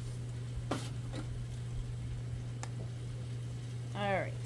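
A few faint clicks and taps from a salt-and-pepper shaker being shaken over a bowl of raw meatloaf mix, over a steady low hum.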